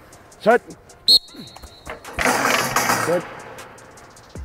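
A football player striking a one-man blocking sled with a metal frame and weight plate: a sharp hit about a second in, followed by a high metallic ring that lasts most of a second. A rougher scuffing noise follows about two seconds in as he tears off the sled.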